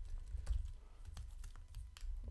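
Typing on a computer keyboard: an uneven run of quick key clicks over a low steady hum.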